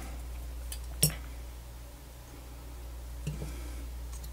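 Small plastic clicks as a smart plug's circuit board and housing are pried and handled: one sharp click about a second in, a softer one near the end, and a few faint ticks, over a steady low hum.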